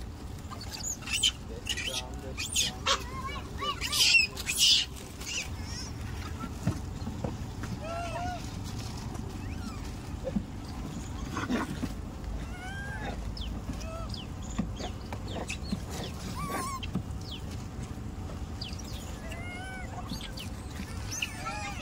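A troop of rhesus macaques calling. Several loud, high shrieks come in the first five seconds, then scattered short squeaky chirps follow.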